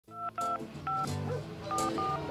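Telephone keypad tones: a quick series of about five short dialling beeps, each two pure tones at once, opening the song. A bass line and other backing music come in underneath about a second in.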